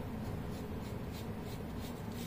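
Felt-tip marker drawing on paper, a faint scratching in a series of short strokes as it joins plotted points into a curve.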